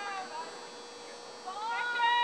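High-pitched shouting voices carrying across a sports field: a short call just after the start, then a louder, drawn-out yell in the last half second.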